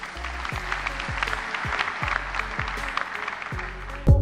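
A large audience applauding, the clapping building up and then thinning out near the end, with background music underneath.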